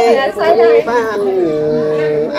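Unaccompanied Tây Bắc Thái folk singing (hát giao duyên, a call-and-response love song): a voice holding long notes that waver and slide from one pitch to the next.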